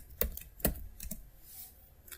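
Computer keyboard keys being typed: a handful of separate, irregularly spaced keystrokes, mostly in the first second.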